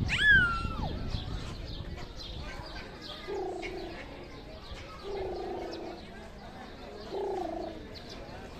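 Birds calling: one sharp call that falls steeply in pitch near the start, then three low, even coos about two seconds apart.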